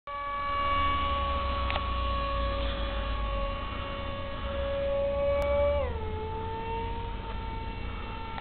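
Radio-controlled model jet flying past, its motor giving a steady high whine that drops in pitch about six seconds in and then holds lower.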